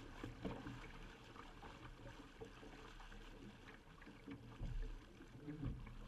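Faint rush and splash of water along the hull of a Laser sailing dinghy under way, with a few low thumps near the end.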